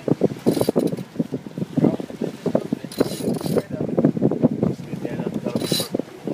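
Sailboat winch and sheet being worked by hand: irregular clicking and rattling, with three short high rushes.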